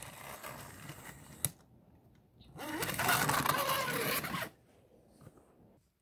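Battery-powered toy train's small motor whirring as it runs on plastic track: faint at first, a click about a second and a half in, then louder for about two seconds in the middle.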